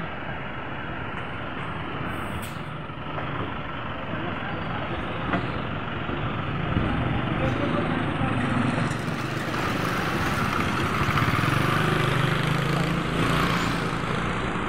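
Street traffic noise with a motorcycle engine running, growing louder in the second half as it comes closer.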